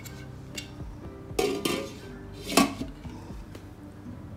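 Glass lid with a metal rim set onto a stainless steel hotpot: two ringing clanks, about a second apart, the second the louder, over soft background music.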